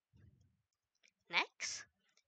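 Mostly quiet with a faint low sound near the start, then a brief snatch of a woman's voice about one and a half seconds in.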